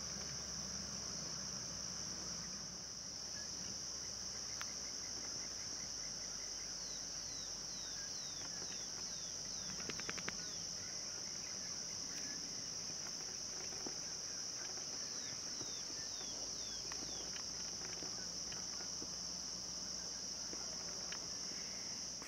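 Steady high-pitched chorus of insects such as crickets in the dusk bush. Two runs of short falling chirps sound in the middle, with a brief patter of clicks about ten seconds in.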